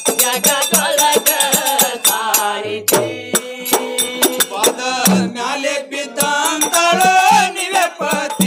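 Moharam pada folk song: men singing to the beat of a barrel drum, with steady jingling percussion.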